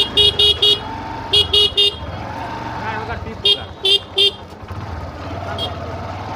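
A vehicle horn honking in groups of quick short beeps: about four at the start, three more about a second and a half in, three more around four seconds in, and a faint one near the end. Crowd chatter continues underneath.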